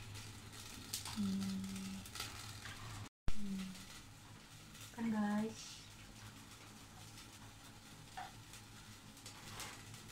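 Meat sizzling on a yakiniku grill plate, a steady hiss with small crackles, with a few short voiced sounds over it.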